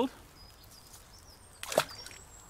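A short splash about one and a half seconds in as a perch is dropped back into a pond, after a stretch of quiet outdoor background.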